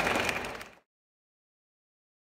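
Audience applause and crowd noise fading out within the first second, then dead silence.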